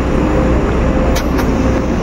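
Steady low rumble and hiss of background noise with a faint steady hum, and two light clicks a little after a second in.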